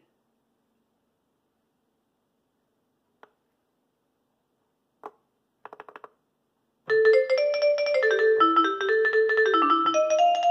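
A Yamaha PSS-A50 mini keyboard's vibraphone voice, with the arpeggiator on, begins about seven seconds in, after a few faint button clicks: a rapid run of notes that steps downward in pitch.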